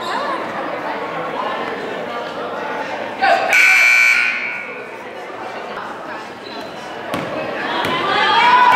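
Gymnasium scoreboard horn sounding once, a steady buzzing tone lasting a little over a second, over crowd chatter in a large gym.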